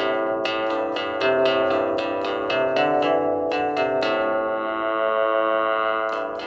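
Artiphon Orba 1's built-in lead synth sound played from its touch pads: a quick melody of sharply struck notes, about four a second, settling into one long held note for the last two seconds.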